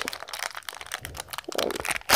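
Thin plastic wrapping crinkling as fingers work a small toy piece out of it, a dense run of irregular crackles.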